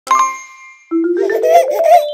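A single bright bell-like ding that rings briefly and dies away, then, about a second in, a short animated-intro jingle of notes stepping upward in pitch.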